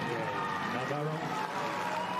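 A male commentator's voice, a few halting words, over a steady low background of crowd and stadium ambience.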